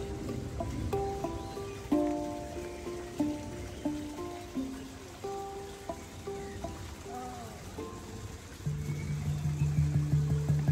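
Handpan played by hand: single struck notes, each ringing out and decaying, forming a slow melody. Near the end a lower note joins in and the strikes quicken into a fast, even run.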